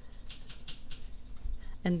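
A run of light, uneven clicks from computer controls while the page is scrolled.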